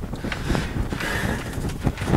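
White plastic sink drain pipe and tee being handled and swung into position, giving several light knocks and clicks over a low handling rumble.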